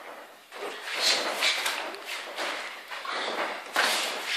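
Footwork scuffing on a boxing ring's canvas and padded boxing-glove hits from two children sparring: a run of short thuds and scuffs, the sharpest near the end.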